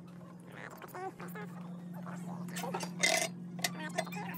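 Fast-forwarded store sound: sped-up, chirpy snatches of voices and handling noise over a steady low hum, with a brief noisy rattle about three seconds in.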